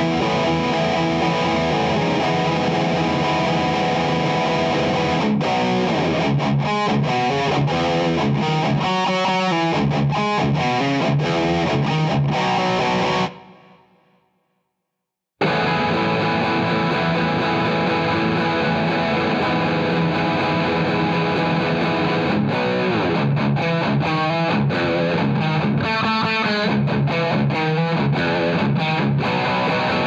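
Heavily distorted electric guitars (B.C. Rich, tuned to drop C-sharp) playing a metalcore chorus riff at a slow tempo. The riff rings out and dies away about 13 seconds in, and after a second or two of silence the chorus harmony part starts, also slow, and rings out at the end.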